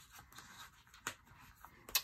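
Sticker-book pages being handled by hand: quiet paper rustling with two short light ticks, one about a second in and one near the end.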